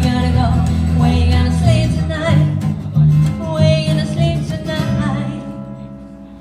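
Live band music: strummed acoustic guitar with bass under a sung melody and a held vocal note, the whole mix fading away near the end as the song closes.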